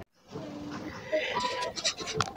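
Faint, wavering vocal sounds from a young child, held for about half a second at a time, after a moment of dead silence at the start.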